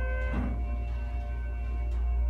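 Schindler 330A hydraulic elevator's electronic chime ringing as the floor indicator changes to 4, its tones fading within about half a second. Under it runs the steady low hum of the hydraulic pump as the car rises.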